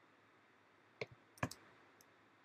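A few short, sharp clicks of computer input over a quiet room: one about a second in, then two close together half a second later, as keys and a mouse are used to edit a file name.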